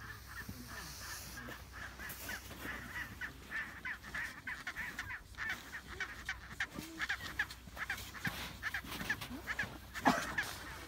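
Penguins calling: a continuous chatter of short, high calls repeated several times a second, busiest in the second half.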